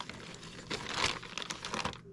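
Clear plastic packaging bag crinkling irregularly as hands dig through the bundled power-supply cables inside it, loudest about a second in.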